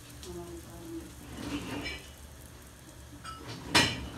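A bread roll toasting in olive oil in a frying pan, the oil frying quietly, with one sharp clank of kitchenware near the end.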